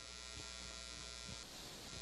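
Steady electrical buzz and hiss with a low hum.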